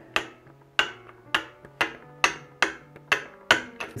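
A ratcheting drill adapter on an engine shaft giving sharp, evenly spaced clicks, about two a second, as a cordless drill turns it, over faint background music.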